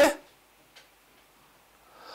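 A pause in a man's speech: his last word cuts off at the start, then near silence with one faint click about three quarters of a second in, and a soft intake of breath near the end.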